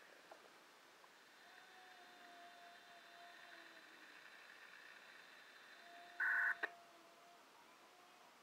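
Handheld radio scanner giving a faint hiss with faint steady tones, then one short electronic beep about six seconds in, followed at once by a click.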